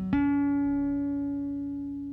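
The closing note of a funk-rock song: a single electric guitar note struck about a tenth of a second in and left to ring out, fading away slowly.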